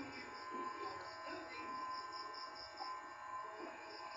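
Faint, high-pitched insect chirping in an even rhythm of about five chirps a second, fading out near the end, over a low background murmur.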